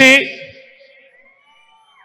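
The last syllable of a man's amplified speech through a public-address system, ringing out and dying away over about half a second. A quiet pause follows, with a few faint, thin tones that bend slightly in pitch.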